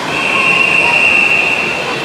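A long, steady, high whistle tone held for about two seconds, over the steady noise of splashing and the crowd at the pool.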